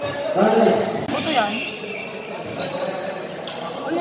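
A basketball bouncing on an indoor gym court, with voices and short high squeaks echoing in a large hall.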